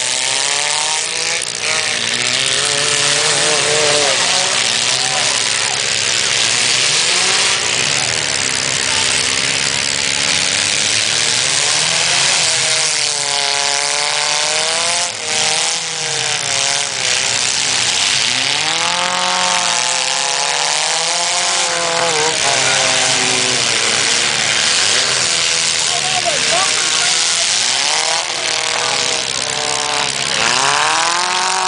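Demolition-derby compact cars' engines revving hard, rising and falling in pitch again and again, over a steady wash of crowd noise from the grandstand.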